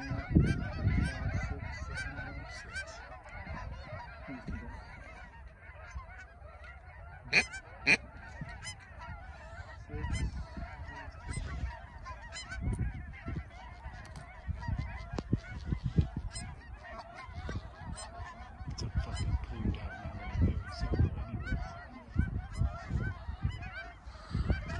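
A large flock of Canada geese honking and clucking, many calls overlapping without a break, with a few louder single calls about seven and eight seconds in. An intermittent low rumble runs underneath.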